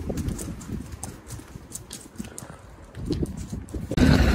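Footsteps on hard paving: short, irregular clicks over a low rumble of wind on the microphone.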